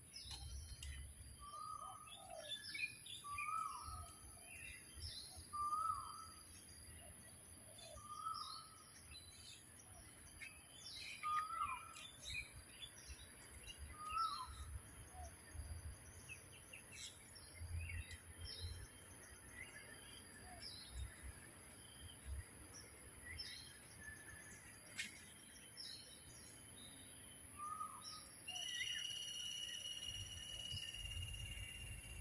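Several birds calling and chirping, with one bird repeating a short, low hooked note about once a second through the first half, and again near the end. A steady, thin high-pitched tone runs underneath.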